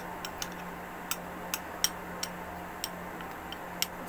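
A spoon clicking against the sides of a small clear cup as a dry mix of flour, baking soda and salt is stirred. The clicks are sharp and irregular, about two or three a second.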